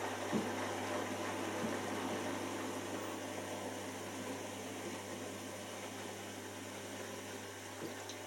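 Miele Professional PW6055 washing machine going into its pre-wash spin: the motor hums steadily as the drum with a load of wet towels turns and picks up speed, with a couple of soft thumps in the first two seconds.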